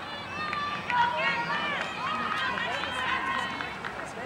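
Several high voices shouting and calling out over one another during play in a youth soccer game. The calls are short and overlapping, with no clear words.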